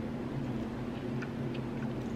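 A steady low hum of room tone, with a couple of faint short ticks as a cupcake's paper liner is handled.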